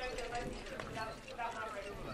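Hoofbeats of a harness horse trotting with a sulky, under background voices of onlookers talking.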